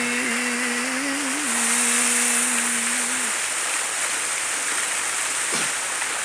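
A man's voice holding one long, steady sung note of a devotional chant for about three seconds, then breaking off, over a constant hiss of running water.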